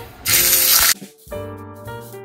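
Seasoned chicken breast laid into hot oil in a frying pan, giving a loud sizzle that starts about a quarter second in and stops suddenly just before the one-second mark. Background music with piano notes follows.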